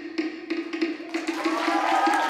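A wooden slit drum (to'ere) playing a fast, even roll that closes the ote'a drumming. About a second in, the audience starts cheering and clapping, and it grows louder.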